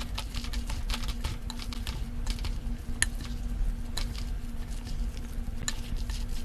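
Wooden chopsticks tossing and mixing sauce-coated somen and glass noodles with vegetables in a glass bowl. The mixing is wet and sticky, with frequent light clicks of the sticks against the bowl, a few sharper ones near the middle and end.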